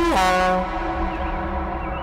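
A long held, voice-like wail slides sharply down in pitch and dies away within the first half second, over a low, steady drone of eerie background music.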